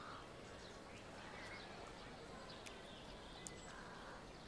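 Faint outdoor ambience with scattered small bird chirps, and two soft clicks in the second half.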